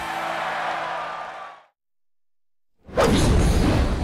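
Background music with sustained tones fades out over the first second and a half, followed by about a second of silence. About three seconds in, a loud whoosh with a deep rumble starts: an end-logo sound effect.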